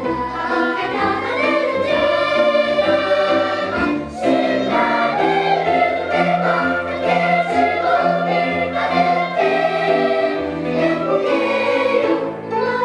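Children's choir singing a song with instrumental accompaniment including strings, with a short breath-like dip about four seconds in.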